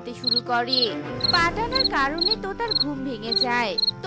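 Cricket chirps repeating about every half second, as a night-time sound effect, over background music with a gliding melody and a low steady drone.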